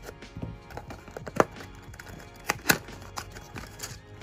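A few sharp clicks and taps as a small cardboard box is cut open with scissors and its flap pulled back, the loudest about a second and a half in and two close together near the end, over soft background music.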